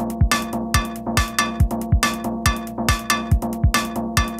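Electronic techno music: a steady kick drum at a little over two beats a second, with bright hi-hat-like hits between the kicks over repeating pitched percussion and synth tones.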